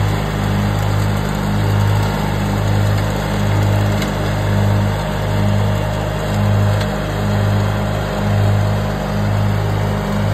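John Deere 316 garden tractor engine running steadily while mowing tall grass, a continuous drone that swells and fades in a slow, even rhythm.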